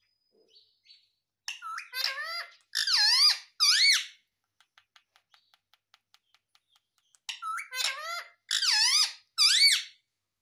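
Indian ringneck parrot calling in two bouts of squeaky, warbling notes whose pitch bends up and down, several notes to a bout. A faint, rapid, even ticking comes between the two bouts.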